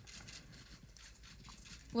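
Quiet room with a few faint, scattered clicks.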